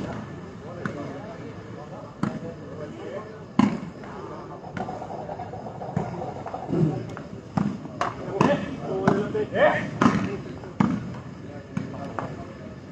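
A volleyball being struck by hands during a rally: a run of sharp slaps, roughly one a second. Players and onlookers shout in between, more in the second half.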